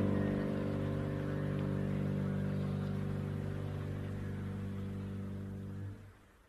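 Solo piano holding a final chord that slowly fades, then is cut off sharply near the end as the piece finishes.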